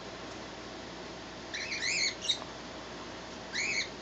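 Red fox kit giving short, high-pitched squeaky whines: a cluster of rising-and-falling calls about two seconds in, and another near the end.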